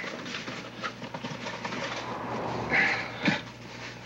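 Rustling with small clicks and knocks, as things are rummaged out of a pack, and a brief voice sound a little after three seconds in.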